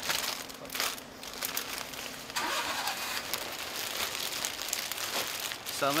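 Plastic snack packets rustling and crinkling as they are handled on shop shelves. From about halfway there is a steadier rushing noise, which may be a vehicle passing outside.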